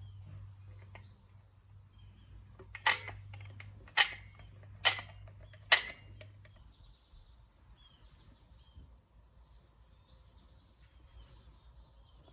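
Plastic squeeze bottle being squeezed into a plastic cup, spurting four times in short, sharp squirts about a second apart.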